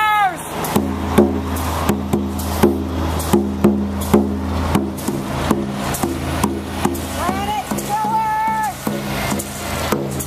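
A steady beat of struck percussion, about two to three knocks a second, over the low, steady running of heavy truck engines. A voice holds one long note from about seven to nine seconds in.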